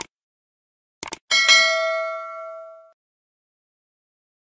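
Mouse-click sound effects, one at the start and a quick double click about a second in, followed by a notification-bell ding of several tones that rings out and fades over about a second and a half.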